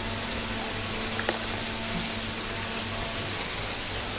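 Water falling steadily from a koi pond's wall spillways and splashing into the pond, with a faint steady hum beneath it. One brief click sounds just over a second in.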